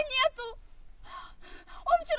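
A woman speaking in a very high, strained, distressed voice, breaking off about half a second in for a breathy pause, then starting again just before the end.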